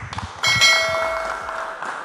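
Studio audience applauding, with a bright bell-like chime of several ringing tones coming in sharply about half a second in and slowly fading.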